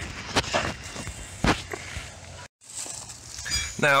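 Scuffs and a few sharp knocks as someone moves over gritty pavement with a handheld camera jostling, then a brief sudden dropout in the middle.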